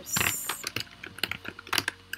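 Typing on a computer keyboard: an irregular run of quick key clicks, with a short hiss near the start.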